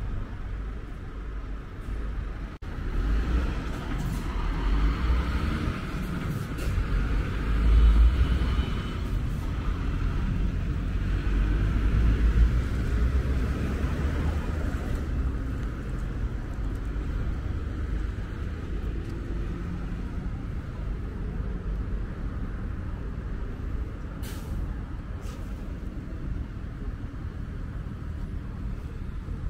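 Road traffic on a city street: cars and buses passing, a steady rumble and tyre hiss that swells louder for a stretch in the first half. Two short sharp hisses come a few seconds before the end.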